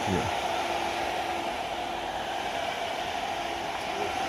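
Steady whirring hiss of running machinery, with a faint low hum that comes and goes.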